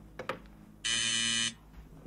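An apartment door buzzer sounds once, a harsh steady buzz a little over half a second long, after a couple of light knocks.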